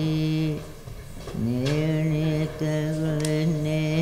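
Chanted singing: voices holding long, steady low notes, breaking off about half a second in and starting again about a second and a half in.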